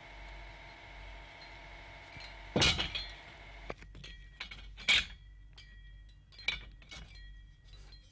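Bamboo poles knocking against each other as they are picked up and handled. There are two loud clacks, one about two and a half seconds in and another about five seconds in, with lighter knocks between them and after.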